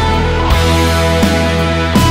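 Rock band playing an instrumental passage with no singing: electric guitar holding long notes over bass, keyboards and a steady drum beat.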